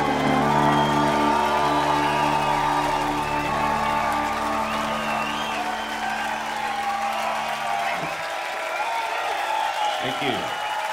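Rock band's final chord ringing out, with a pedal steel guitar sustaining over it. The low notes drop away about eight seconds in, while the audience cheers and whoops.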